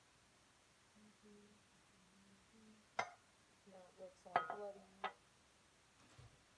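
Glass measuring cup clinking against hard surfaces: a sharp ringing clink about halfway through, then two more a second or two later, the middle one loudest. Faint humming by a woman's voice runs underneath.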